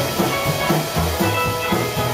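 Rockabilly band playing live: electric guitars over a drum kit with a steady beat.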